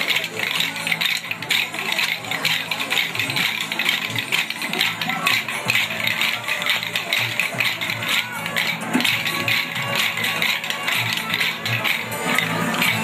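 Many small wooden dance sticks clicking against each other during a kolattam stick dance: a dense, uneven patter of clicks over music.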